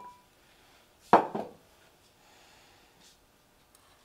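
A glass serving bowl set down on a wooden table: one loud knock about a second in, followed by a short clatter.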